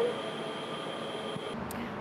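Steady ambience of an elevated MRT station platform: an even hiss with a faint, steady high-pitched whine. About one and a half seconds in it cuts to a quieter outdoor background.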